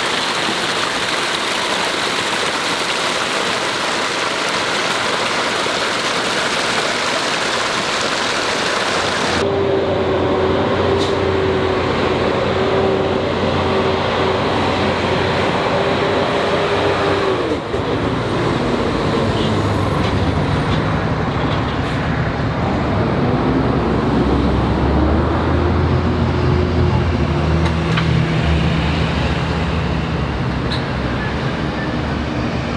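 Water splashing steadily down a small rocky cascade into a pool. After about nine and a half seconds the sound cuts to street traffic: truck engines running as heavy vehicles drive past, one engine note holding steady and then falling away as it passes.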